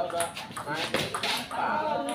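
People's voices talking and calling out over a table tennis rally, with short clicks of the celluloid ball striking bats and table.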